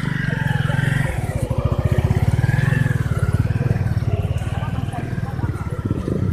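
A small motorcycle engine running close by, its firing a fast, even pulse.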